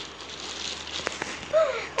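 Plastic bag rustling as a child reaches in for tissues, with a couple of light clicks about a second in. A faint child's voice comes in near the end.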